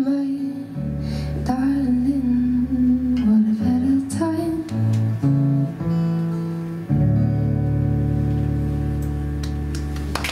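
Acoustic guitar playing the closing chords of a song, with a woman's voice holding wordless notes over it; a last chord strummed about seven seconds in rings out and slowly fades.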